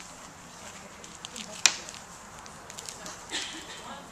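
Handling noise of tools and small objects on a worktable: a few light clicks, one sharp knock about one and a half seconds in, and a brief rustle near the end.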